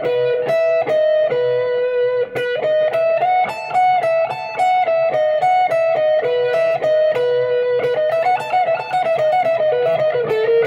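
Telecaster-style electric guitar playing a fast, alternate-picked bluegrass single-note lick up to speed. It is an intro in the key of B that outlines a sus4 sound, a quick unbroken run of picked notes.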